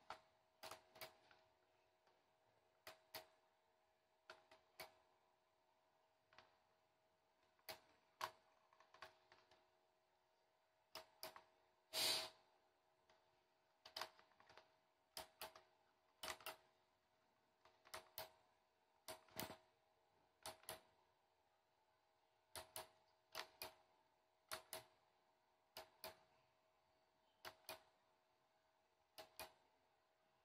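Push buttons on a warning light bar's control box clicking, mostly in quick pairs every second or so as flash patterns are switched, with one louder knock about twelve seconds in. A faint steady hum runs underneath.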